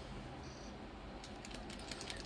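Faint, quick clicking of a mixing ball rattling inside an Army Painter dropper bottle of paint as it is shaken, starting a little over halfway through.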